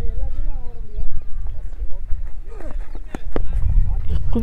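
Steady low wind rumble on the microphone with faint voices in the first second, broken by a few sharp knocks: one about a second in and two close together near three seconds. Among the knocks is a cricket bat striking the ball for a shot that goes to the boundary.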